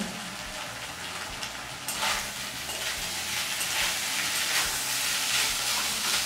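Potato filling frying in a metal kadai: a soft hiss at first, then from about two seconds in a louder, crackling sizzle as a metal spatula stirs and scrapes the potatoes around the pan.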